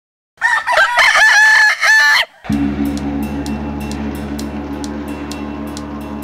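A rooster crows once, a loud call about two seconds long. About halfway through, a low steady music drone with light regular ticks starts up.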